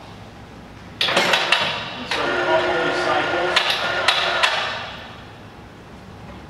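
Air-powered vacuum pump of a sheet-metal vacuum lifter hissing as it pulls vacuum on the suction cups. It starts suddenly about a second in, carries sharp metallic clicks and a steady ringing tone, and dies away after about four seconds, typical of an air-saving pump that shuts off once the set vacuum is reached.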